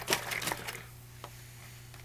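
Hands handling a juice carton: a quick run of small clicks and rustles in the first second, then a single sharp tick, over a low steady hum.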